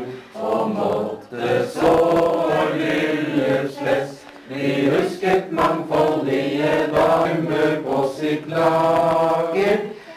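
A table of men and women singing a song together from printed song sheets, many voices in unison holding long notes, with short breaks between lines.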